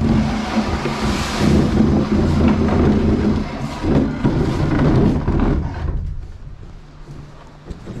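Heavy rumbling and knocking of a Broyhill wooden hall table being handled and carried into a box truck. It dies down over the last couple of seconds.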